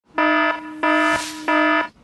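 Three identical buzzer-like electronic tones, each about a third of a second long and evenly spaced, with a brief noisy whoosh just before the third.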